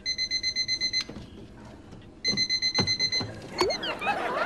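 Alarm clock beeping rapidly, about eight beeps a second, in two bursts of about a second each, with a few knocks in between and near the end.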